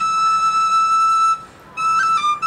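A solo flute playing a slow tune. One long note is held from the start and breaks off about a second and a half in, and the melody picks up again near the end.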